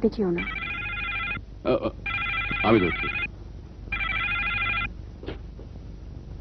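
Telephone ringing: three rings of about a second each, with short gaps between them.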